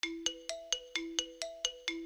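A short music jingle of quick, bright notes, about four a second in a repeating pattern, over held lower notes.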